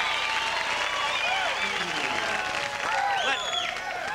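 Studio audience applauding, with shouts and whoops from many voices over the clapping.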